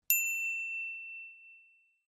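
A single bright bell ding from a notification-bell sound effect: it strikes sharply just after the start and rings out, fading away over about two seconds.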